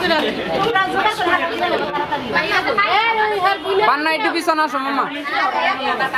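Chatter of several people talking over one another, with voices overlapping throughout.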